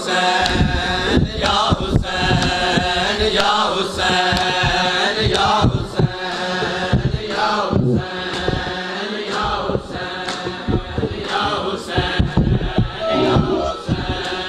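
A nauha (Shia mourning lament) chanted by a male voice in repeating phrases through a loudspeaker, with a crowd of men beating their chests in matam: many dull hand slaps under the chant.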